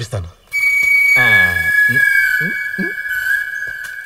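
Film soundtrack effect: a sudden, loud, high-pitched whistle-like tone begins about half a second in and holds steady over a hiss. A brief falling, voice-like cry sits under it around a second in.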